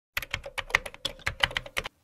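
Keyboard typing: a quick, irregular run of sharp key clicks, about ten a second, that stops shortly before the narration begins.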